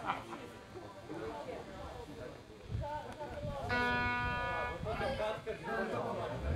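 Faint voices in a pause between songs, with a couple of low thuds and one steady note from an amplified electric guitar, held for about a second midway.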